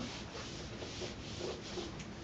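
Whiteboard eraser rubbing across a whiteboard in a series of short wiping strokes, about two a second, clearing off marker writing.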